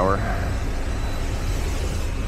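Steady low hum and whir of a powered-up Bombardier Global 7500's equipment heard from inside its avionics bay, with faint steady high-pitched whines above it.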